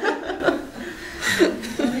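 Women chuckling and laughing, with a short breathy laugh about a second and a half in and a few words near the end.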